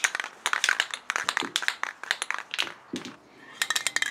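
Aerosol spray paint can being shaken, its mixing ball rattling and clinking in quick, uneven strokes, with a short pause near the end. The can is nearly empty.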